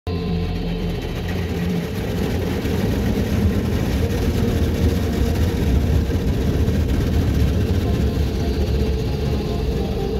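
Water jets of a touchless car wash spraying against the car, heard from inside the cabin as a steady dense wash of noise over a low hum.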